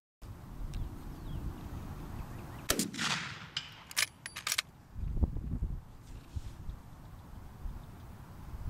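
A single gunshot about three seconds in, trailing off in a long echo, followed about a second later by four sharp cracks in quick succession.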